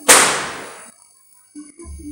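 A single loud firecracker bang about a tenth of a second in, dying away over nearly a second.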